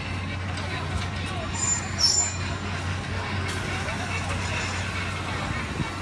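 Outdoor ambience of background voices and traffic over a steady low hum, with two short high-pitched sounds about two seconds in.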